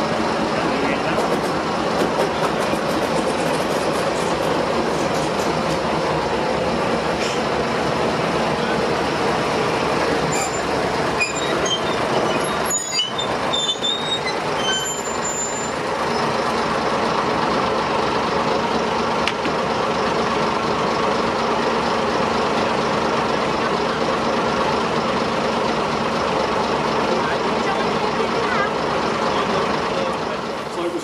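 Small diesel shunting locomotive running steadily close by, a constant engine drone. Brief high squeals and clicks come between about ten and fifteen seconds in.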